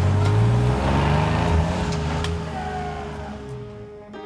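Vintage pickup truck's engine revving as it pulls away, rising in pitch over the first couple of seconds and then fading, under background music.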